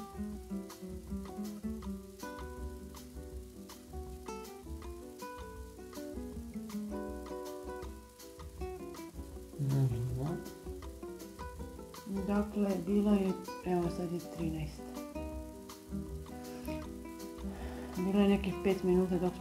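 Background music with a steady beat, with brief low voices over it about ten seconds in and again a little later.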